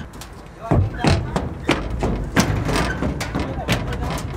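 Footsteps running up metal bleacher steps: a string of irregular thuds, about three a second, starting about a second in.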